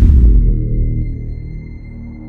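Ominous cinematic transition sting: a deep boom hits at the start and fades slowly into a low, held drone with a thin, steady high tone above it.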